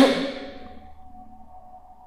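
A sudden loud noise close to the microphone, most likely from the narrator, fading away over about a second. Under it a faint steady hum-like tone keeps going, and a brief click comes near the end.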